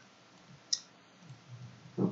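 A single computer mouse button click, a little over a third of the way in, over faint room hiss.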